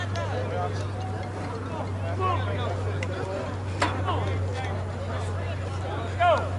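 Scattered distant voices of softball players calling across the field over a steady low hum, with one sharp knock a little past halfway.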